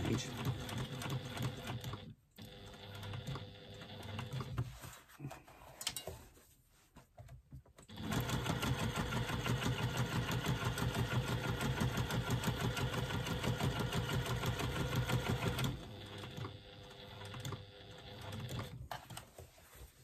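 Electric sewing machine stitching through a faux leather panel with a layer of headliner foam beneath it, basting the foam in place. It runs in short bursts at first, stops for a few seconds, then stitches fast and steadily for about eight seconds before slowing to softer, shorter runs near the end.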